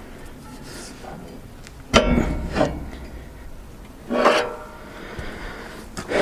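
A man straining as he levers hard on a wood chipper's steel flywheel: a sharp metal knock about two seconds in, then short effortful grunts or breaths, again near four seconds.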